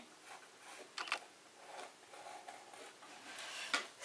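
Black Sharpie permanent marker drawing on a mixed-media canvas: faint scratchy strokes, a louder stroke about a second in, and a sharp click near the end.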